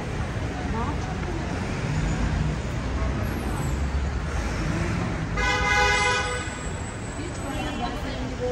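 City street traffic, a steady rumble of passing vehicles, with a vehicle horn sounding once for just under a second about five and a half seconds in. Passers-by are talking nearby.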